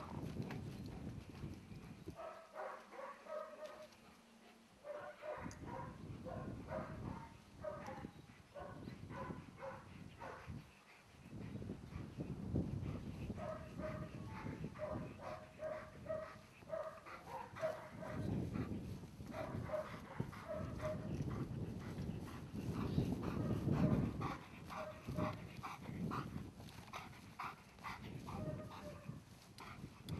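A dog barking repeatedly in short calls with brief pauses between them, over wind rumbling on the microphone.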